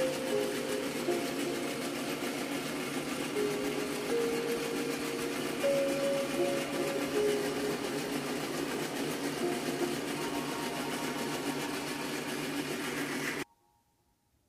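A metal lathe runs steadily while its cutting tool turns down a cast polyurethane wheel tire, peeling off long strings of swarf. The sound stops abruptly about a second before the end.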